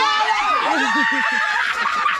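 Several people laughing and shrieking excitedly over one another, with one high squeal held for about a second near the middle.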